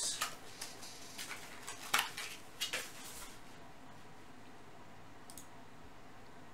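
A few light clicks and knocks of things being handled and set down on a tabletop, the sharpest about two seconds in. After that there is quiet room tone with one faint click near the end.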